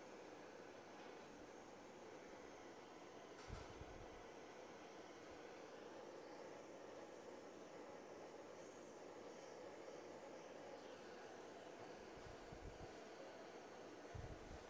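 Faint, steady hiss of a handheld butane chef's blowtorch flame playing over sugar to melt and caramelize it, with one soft knock about three and a half seconds in.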